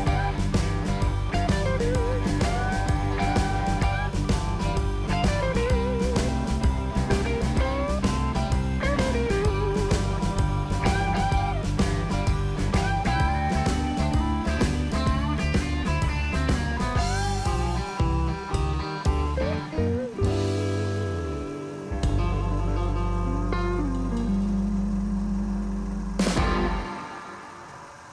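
Background music: a guitar-led rock instrumental with a steady drum beat and bending, wavering guitar notes. The drums drop away in the last third, leaving sustained guitar notes.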